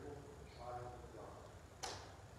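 A faint, quiet voice, with one sharp click near the end.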